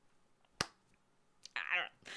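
A single sharp click a little over half a second in, then a brief voice sound near the end, such as a breath or laugh.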